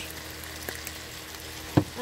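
Curried potatoes and chickpeas sizzling steadily in the pot. A single sharp knock comes near the end.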